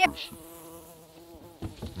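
A flying insect buzzing close by, a steady hum whose pitch wavers slightly. A few brief knocks come near the end.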